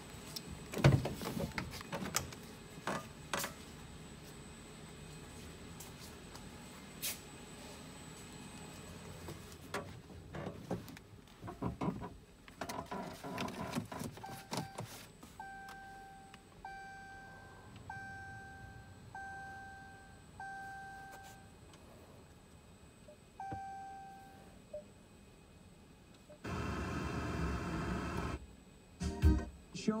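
Ram 1500 pickup's door clunking open and shut, with knocks as someone gets into the cab. About halfway through, the dashboard warning chime sounds six evenly spaced tones, and once more a couple of seconds later. Near the end the radio comes on, playing music.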